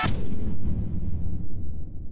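A deep cinematic boom sound effect hits as the electronic intro music cuts off, leaving a low rumble that slowly dies away.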